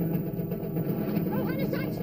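Outdoor ambience of a steady low hum, with indistinct distant voices or calls coming in about halfway through.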